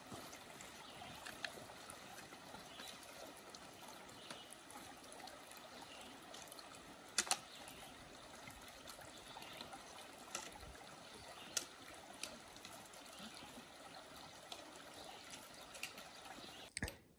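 Faint trickle of a shallow rocky stream running over stones, with a few sharp clicks of trekking-pole tips striking rock, two close together about halfway through.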